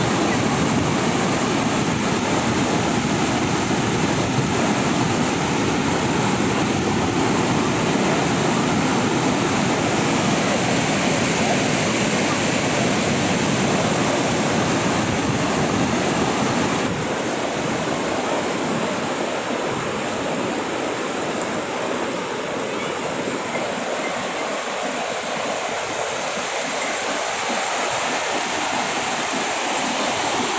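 Whitewater of LeHardy Rapids on the Yellowstone River rushing steadily. A little past halfway it turns slightly quieter, with less low rumble.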